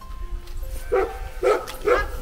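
A dog barking three times, about half a second apart, over background music.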